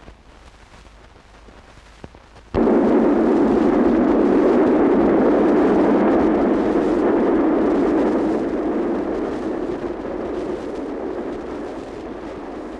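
Passing train running, a loud, even rushing rumble that cuts in suddenly about two and a half seconds in and slowly fades toward the end.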